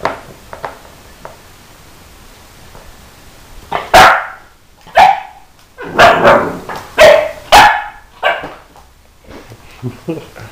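A puppy barking, about six short barks roughly a second apart, starting about four seconds in.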